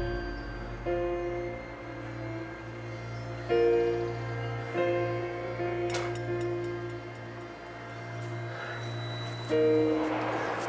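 Background film score: soft sustained chords over a steady low drone, with a new chord entering every one to three seconds. A single brief click sounds about six seconds in.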